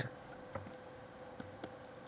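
A few faint computer mouse clicks, short and spaced apart, over a low steady hum.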